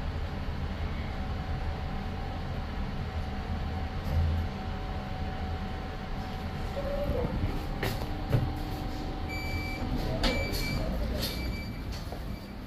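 EM Services/Shenyang Brilliant lift arriving at the landing: a steady hum from the car travelling in the shaft, then clicks and clunks as it stops and the doors work, with a short beep repeating about once a second near the end.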